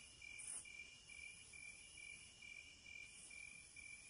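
Near silence, with a faint high chirp repeating evenly about twice a second.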